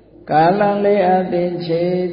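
A Buddhist monk chanting a Pali passage in a steady, sustained recitation tone, his voice holding each pitch longer than in speech. The chant starts about a quarter second in.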